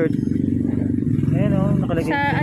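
A motor vehicle engine running steadily, with a short stretch of speech near the end.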